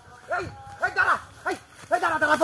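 Short clucking "bok" calls, about five in two seconds, each a brief call that rises and falls in pitch.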